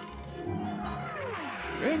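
Cartoon sound effects of a thrown blueberry flying in: a falling whistle over about a second, then a splat as it lands near the end, over background music.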